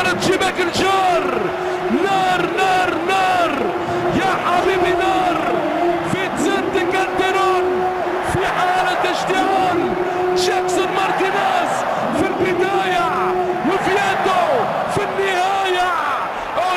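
Excited football commentator's voice, shouting and drawing out exclamations over a goal replay, with stadium crowd noise beneath.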